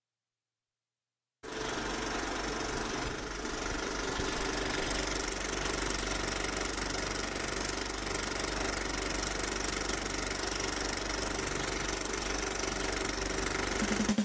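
Film projector running sound effect with the countdown leader: a steady mechanical whirr and rattle with film crackle. It starts suddenly about a second and a half in.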